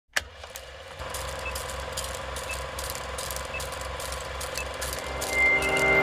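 Vintage film-leader countdown sound effect: a steady low projector-like hum with scattered crackle and pops, and a faint tick about once a second. It ends in a short high beep near the end.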